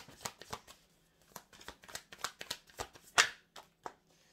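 A tarot deck being shuffled by hand: a quick, irregular run of card flicks and swishes, with one louder swish about three seconds in.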